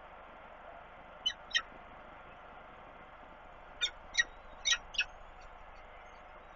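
Peregrine falcons calling at the nest during a feeding: six short, high calls, two about a second in and four more close together between about four and five seconds, over a faint steady hiss.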